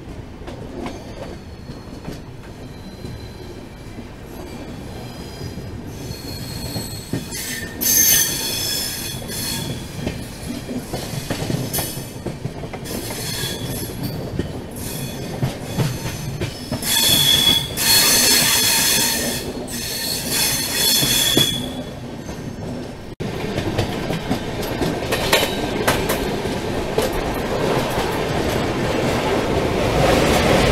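Coach wheels of an Indian Railways AC express squealing against the rails as the train pulls out of a station, the high squeal coming in two spells over the running rumble and clack of the wheels. After a sudden break near the end, the running noise is louder and steadier.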